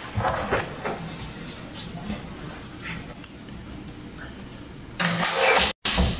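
A woman crying: ragged, breathy sobbing, with a louder sob near the end.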